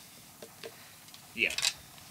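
Quiet room tone with a few faint clicks, and a man saying a short "yeah" about one and a half seconds in.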